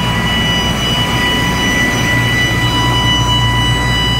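Loud, steady whistling from an M1078 LMTV's air system as the central tire inflation system fills the tires, one held high tone with overtones, over the truck's running diesel engine. The whistling comes from air forced through the small orifice of the original air safety valve, which slows tire filling.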